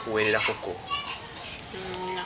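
Speech: short spoken phrases in the first half-second, around one second in, and again near the end.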